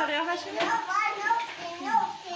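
A young child's voice talking in short, high-pitched phrases.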